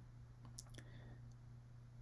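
Near silence over a low steady hum, with a few faint clicks about half a second in: a stylus tapping on a drawing tablet as handwriting is added.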